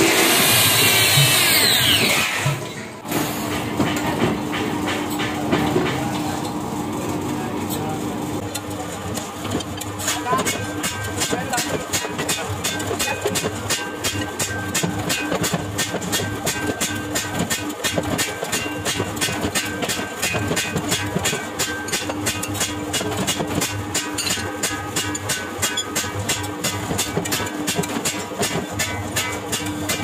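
A hand angle grinder sanding a steel pan, its pitch falling as it winds down. After a cut, a steady machine hum, then a mechanical power hammer striking a steel rod on its anvil in rapid, even blows, several a second.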